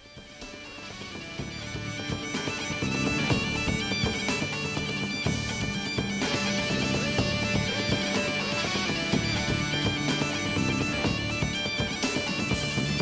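Background bagpipe music fading in over the first few seconds, a steady drone held under the melody.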